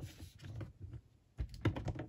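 Irregular light clicks and taps of small hard objects being handled, with a quick run of them about a second and a half in.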